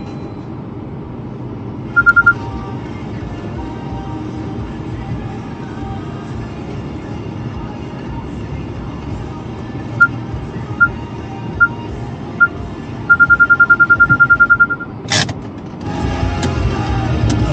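Car cabin hum while driving, broken by loud electronic beeps at one high pitch: a short burst about two seconds in, then single beeps about a second apart that speed up into a rapid run near the end. A sharp click follows just before the end.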